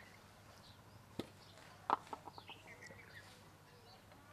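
Steel kitchen vessels knocking together: a light tap about a second in, then a sharp clank with a short ring, followed by a few lighter clinks. Birds chirp faintly in the background.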